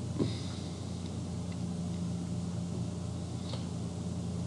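Room tone: a steady low electrical or fan hum, with a brief faint sound just after the start.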